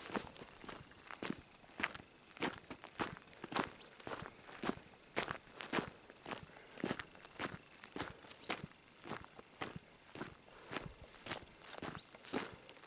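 Footsteps crunching on a gravel road, a steady walking pace of about two steps a second.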